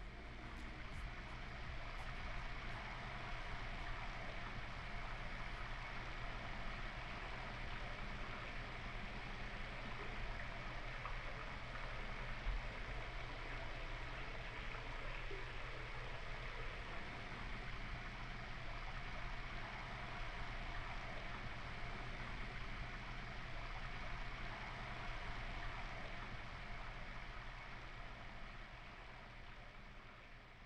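Shower running: a steady hiss of spraying water that slowly fades out near the end.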